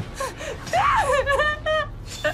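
A woman gasping and crying out in distress, with a run of short, broken cries in the second half.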